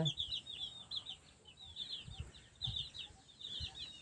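A flock of young chicks cheeping: many short, high, falling peeps overlapping without a break. A couple of soft low thumps come near the middle.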